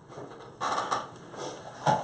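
Handling noise from headphones being pulled off near a studio microphone: a brief rustle just over half a second in, then a sharp knock near the end.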